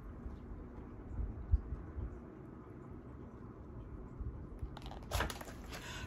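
Faint handling noise of a hardcover picture book being held up and lowered: a few soft low bumps, about a second in and again near the end, with a brief rustle, over quiet room tone.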